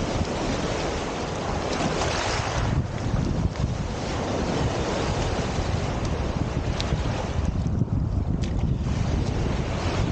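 Small lake waves washing over a pebble shore, their hiss swelling and ebbing, with wind buffeting the microphone as a steady low rumble.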